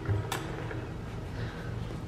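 A single short click about a third of a second in, over a low steady hum of room noise.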